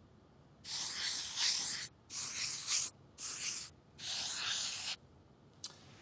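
Four scratchy strokes like a marker drawing lines on a board, each half a second to a second long, as the four sides of the vowel-chart quadrilateral are drawn in.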